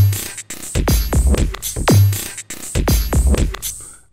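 Punch 2 software drum machine playing a groove: kick drums whose pitch drops quickly, the hardest near the start and again about two seconds in, with open hi-hats and other hits on top. A sliced drum loop plays back from the slice pads at the same tempo.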